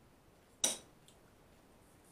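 Metal cutlery striking a plate once, a short bright clink a little over half a second in, followed by a faint tick about a second in, as a roast beef joint is carved with a knife and carving fork.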